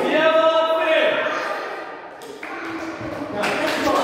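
Voices echoing in a large school gym hall, opening with one high voice held on a steady pitch for about a second.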